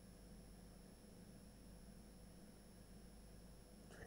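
Near silence: faint steady microphone room tone with a low hum.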